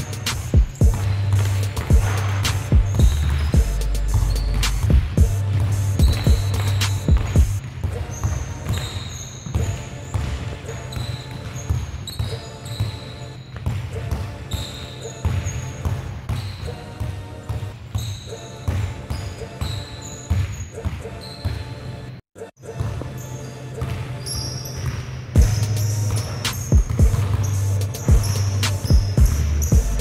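Basketballs dribbled on a hard court, as a run of irregular bounces, over hip hop music with a heavy bass line. Everything cuts out briefly about 22 seconds in.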